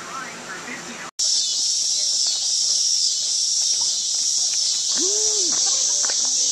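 Murmur of voices indoors for about a second, then an abrupt cut to a loud, steady, high-pitched outdoor chorus of insects.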